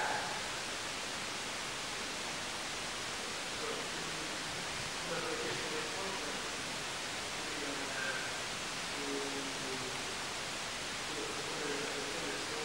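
Steady hiss of a low-level old recording. Faint, distant speech comes through it now and then.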